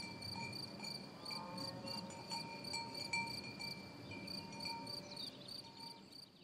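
Crickets chirping in a steady, even rhythm of about four to five pulses a second.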